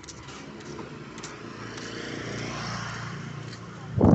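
A motor vehicle passing on the street, its engine and tyre noise swelling to a peak a little before three seconds in and then fading.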